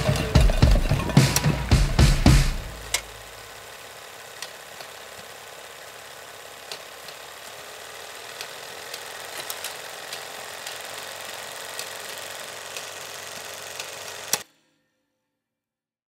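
Closing music ends about two and a half seconds in. A faint steady hiss follows, with scattered soft clicks like old film-reel crackle, and it cuts off suddenly near the end.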